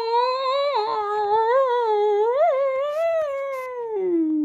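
A person's voice holding one long high note that wavers a little in pitch, without words.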